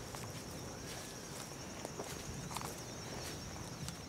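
Faint rural outdoor ambience: a steady high insect trill with a few faint bird chirps, and a few soft footsteps in grass.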